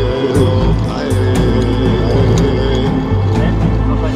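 Background music in a Native American style: sustained held tones over low bass notes that change about once a second.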